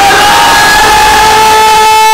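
A man's voice over a microphone holds one long, loud, steady sung note, drawing out the last syllable of a recited Urdu couplet.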